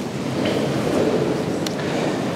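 Congregation rustling and shifting in a large church, a steady rumbling noise with a few faint knocks, echoing through the nave.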